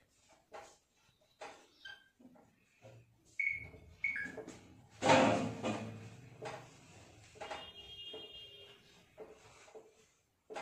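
Marker writing on a whiteboard: scattered short strokes and taps with a few brief squeaks, and a louder thump about halfway through.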